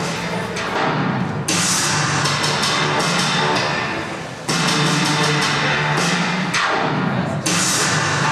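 Music with percussion, changing abruptly a few times, as at edit points.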